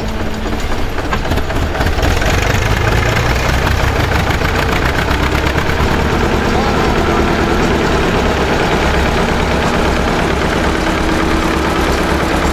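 Engines of a vintage Hanomag tractor and a second tractor pulling a potato harvester, running together under load with a steady, rapid chugging.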